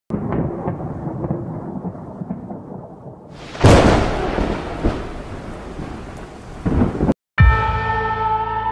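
Thunderstorm sound effect: rumbling thunder with rain-like noise and a loud crash about three and a half seconds in. It cuts off just after seven seconds, and a held synth chord begins right after.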